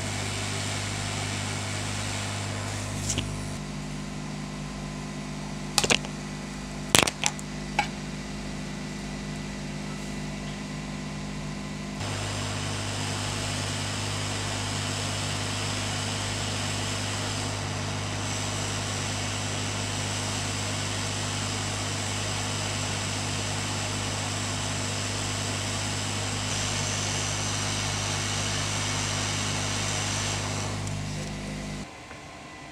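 Hot air rework station blowing steadily, a hiss with a low hum, while a surface-mount MOSFET is heated for removal and fitting on a laptop motherboard. A few sharp clicks come a few seconds in.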